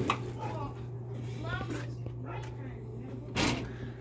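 A truck's carbureted V8 engine idling steadily as a low hum, with a single thump near the end.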